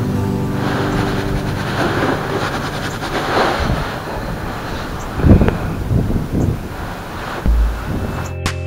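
Wind buffeting the microphone in gusts, the strongest about five seconds in, with a low thump near the end, over background music.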